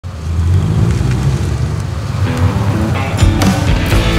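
A song's intro: a low rumble, then pitched notes come in about halfway through, and the full band with drums comes in about three seconds in.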